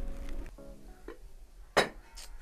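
Background music that stops about half a second in, then near the end a single sharp clink as a plate is set down on a wooden table.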